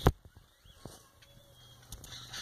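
A single sharp click right at the start, then a few faint ticks: hands handling an Invert Mini paintball marker.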